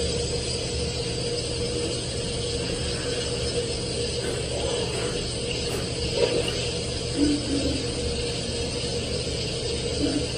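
Steady hiss with a low hum and a faint steady tone, with a few brief faint muffled sounds in the second half.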